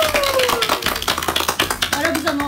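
Small group of people clapping quickly in welcome. A single falling tone runs through the first second or so.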